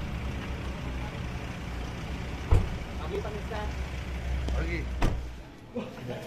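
An SUV's engine idling with a steady low rumble, with a car door shutting in a sharp thud about two and a half seconds in and another shorter knock about five seconds in; voices talk around it.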